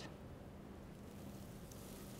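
Faint room tone in a lecture hall, with a steady low hum.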